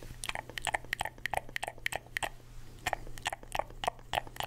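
Wet mouth sounds (lip smacks and tongue clicks) made through a cardboard tube held close to a microphone. They come in quick, irregular succession, several a second.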